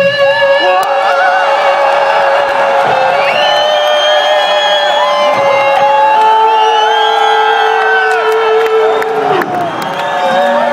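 Electric guitar holding long sustained notes of a slow melody: one note for about five seconds, then a lower one for about three. A concert crowd cheers and whoops over it.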